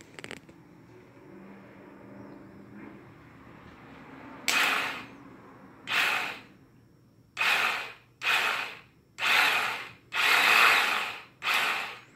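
The 1993 Kawasaki Ninja EX500's electric starter motor whirs in seven short bursts, each half a second to a second long, starting about four and a half seconds in, as it is run straight off a battery. A click comes just after the start. The starter spins, which shows the starter is good and points to the bad starter relay as the cause of the no-start.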